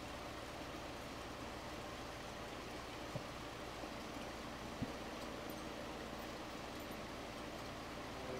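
Steady hiss of a Carlisle CC glassworking torch flame burning at the bench, with two faint ticks a few seconds in.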